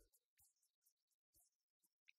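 Near silence, with only a few very faint ticks.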